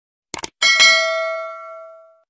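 Subscribe-animation sound effect: two quick clicks, then a notification bell chime struck twice in quick succession that rings out and fades over about a second and a half.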